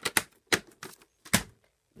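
Plastic VHS tape cases being handled: several sharp clacks at uneven intervals as cases knock together and are set down.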